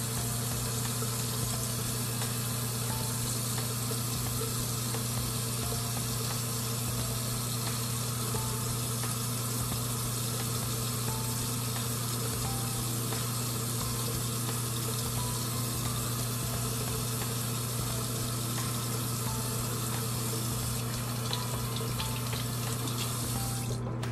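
Water running steadily from a bathroom tap, a constant rushing hiss with a low hum underneath, which cuts off abruptly near the end.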